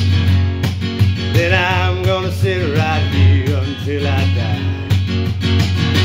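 Taylor steel-string acoustic guitar with a capo, strummed in a steady country rhythm, playing out the end of the song after the last sung line.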